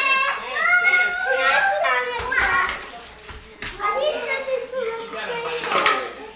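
Young girls' high-pitched voices as they play, chattering and calling out without clear words, with a few light knocks among them.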